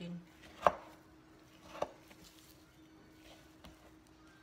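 Kitchen knife slicing ripe cantaloupe and knocking on a wooden cutting board: two sharp knocks about a second apart, the first the loudest, then a few faint taps.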